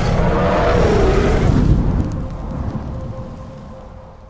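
Intro sound effect: a gorilla-style roar over a deep, thunder-like rumble. It fades away over the last two seconds.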